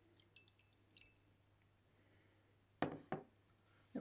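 Faint trickle and drips of water poured from a glass jug into a bowl already holding water, dying away within the first second. About three seconds in come two sharp taps, a third of a second apart, the loudest sounds here.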